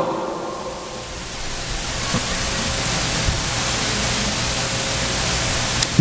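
Steady hiss of noise, like static, dipping slightly in the first second and then holding level.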